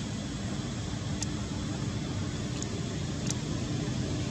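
Steady low rumbling outdoor background noise with a faint steady hum, crossed by three short high ticks, about a second in and twice near the end.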